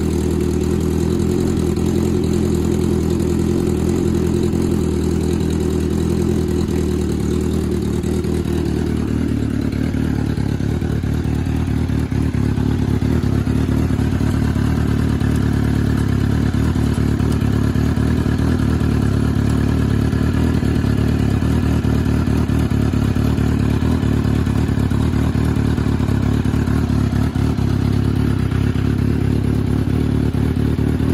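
Turbocharged 2008 Suzuki GSX-R1000 inline-four engine idling steadily at about 1,300 rpm just after starting. It is still cold and in the ECU's warm-up phase, running on a standalone MaxxECU tuned for E85.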